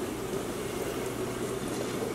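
Steady rushing of water circulating through the store's running coral tanks, with a faint low steady hum underneath.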